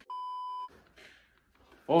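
A single electronic beep: one steady, high tone lasting about half a second, cutting off abruptly. A voice says "Oh" right at the end.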